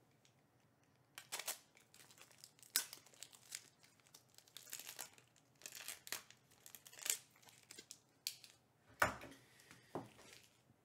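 Card packaging being opened by hand: plastic or foil wrapping crinkling and tearing in irregular rustling bursts, starting about a second in.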